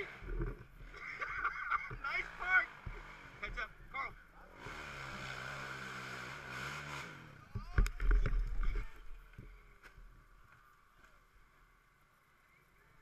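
Hillclimb quad's engine revving steadily for about two seconds in the middle, with shouting voices before it and close low thumps and rumble after it.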